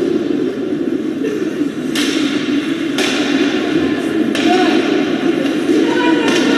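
Ice hockey play in an indoor rink: three sharp knocks of sticks and puck against the ice and boards, roughly a second apart, over a steady murmur of spectators' voices.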